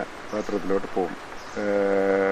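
A man speaking Malayalam: a few short syllables, then one long drawn-out vowel about a second and a half in, a hesitation sound held at a steady pitch.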